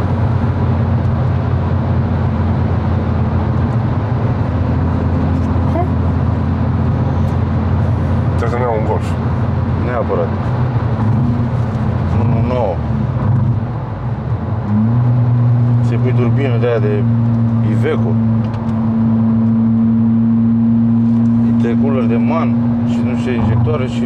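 Volkswagen Golf GTI's turbocharged four-cylinder engine heard from inside the cabin, pulling at a steady speed with road and tyre noise underneath. About fourteen seconds in the engine note dips briefly, then comes back louder and holds steady under heavier load until near the end.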